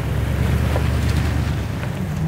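Toyota Tundra pickup's engine running as the truck pulls away, a low steady note.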